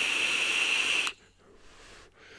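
Direct-lung draw on a Smok TF sub-ohm tank: a steady, airy hiss of air pulled through the tank's airflow and over the firing coil, which stops suddenly about a second in. A faint exhale follows.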